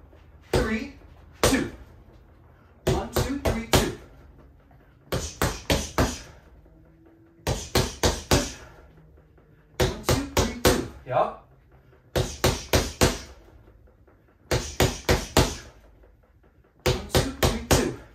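Punches landing on a doorway-mounted Quiet Punch bag in quick sets of four: the one-two-three-two combination (jab, cross, lead hook, cross). The sets repeat about every two and a half seconds, with short pauses between.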